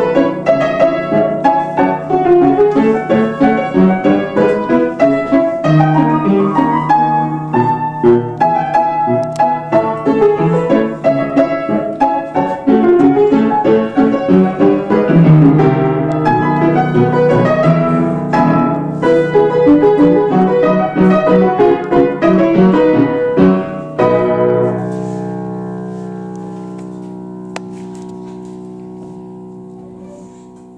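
Upright piano played with quick, dense runs of notes. About 24 seconds in, the playing stops on a final chord that is left to ring and slowly die away.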